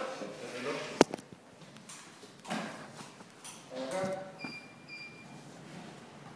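Faint voices in a gym, with one sharp knock about a second in and a couple of short high tones near the end.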